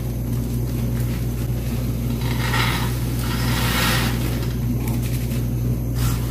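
Raw peanuts poured into a wok of salt for dry-frying, a rattling hiss from about two to four and a half seconds in, over a steady low hum from the stove area.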